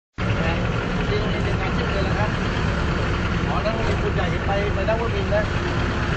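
Steady low rumble of an idling vehicle engine, with people talking faintly over it.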